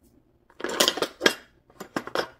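Paintbrushes and metal palette knives clattering and clinking against each other in a clear plastic tool box as a hand sorts through them: a quick run of rattles starting about half a second in, then a few lighter clicks near the end.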